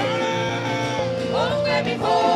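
Live gospel worship music from a church band, with a long held melody note that slides upward into the next note about halfway through.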